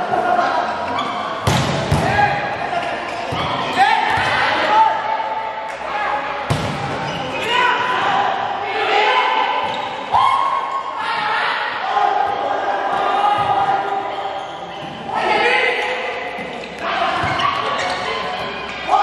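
Volleyball rally in a large echoing hall: a few sharp slaps of hands on the ball, several seconds apart, over shouting from players and onlookers.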